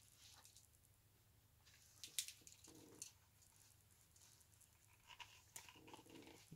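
Near silence with a few faint clicks and rustles of two knife sheaths being handled and laid side by side, about two seconds in, at three seconds, and near the end.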